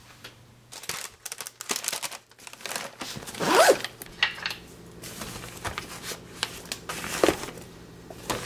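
Zipper on a soft insulated lunch bag being pulled open, among rustles and clicks of the bag being handled. The loudest zip is about three and a half seconds in, with another shorter one near the end.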